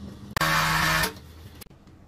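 A brief burst of music that starts and stops abruptly, lasting under a second, followed by faint background noise.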